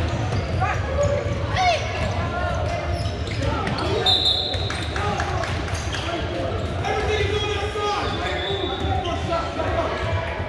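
Basketball dribbling and sneaker squeaks on a hardwood gym floor, with players' and spectators' voices echoing in a large hall. A short high whistle blast comes about four seconds in, as play stops.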